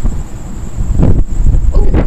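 Wind rumbling and buffeting on the phone's microphone, with a brief sound about a second in and a voice saying "Oh" near the end.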